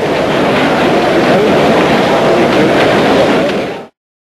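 Steady noise of the arena crowd of spectators, which cuts off suddenly near the end.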